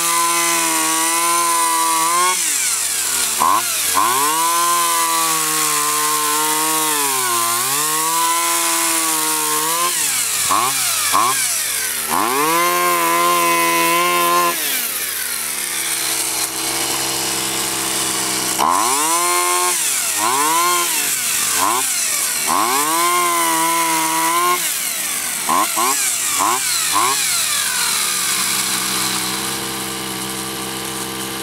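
Tanaka two-stroke pole saw engine revving up and down repeatedly, dropping back to a steady idle for a few seconds near the middle and again near the end. Its idle is set a little high.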